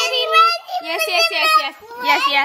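Toddlers' high-pitched voices babbling and calling out, with no clear words.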